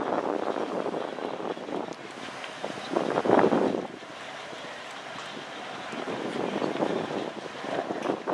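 Wind buffeting the microphone, a rough, uneven rumble that rises and falls, gusting strongest about three seconds in.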